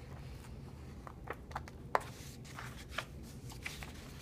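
Small scissors snipping through paper in a string of short, irregular cuts along the outline of a cut-out, with the sheet rustling as it is turned; the loudest snip comes about two seconds in.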